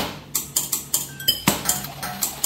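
A beat built from sampled household sounds playing back from a music sequencer: a quick rhythmic run of short clinks and knocks, many ringing with a brief pitch, laid out as a melody. The strongest hits fall at the start and about a second and a half in.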